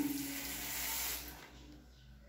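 Hiss of a hand trigger spray bottle misting liquid onto a tiled floor for about a second, then dying away to faint room tone.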